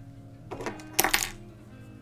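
A few sharp metallic clicks, then a louder quick cluster of clinks about a second in, as a small metal fly-tying tool is picked up and handled, over quiet background music.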